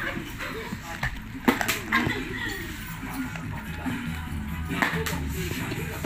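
A plastic bottle knocking on a tiled floor a few times as it is flipped and lands, over background music and low voices.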